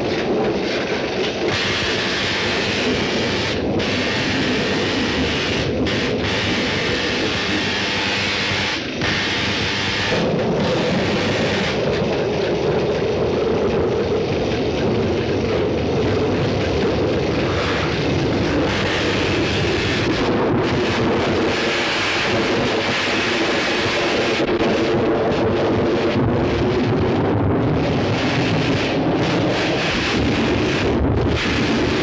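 Thunderstorm sound effects: steady wind with rumbling thunder, under a continuous electrical hum from the laboratory apparatus as lightning strikes the raised operating table.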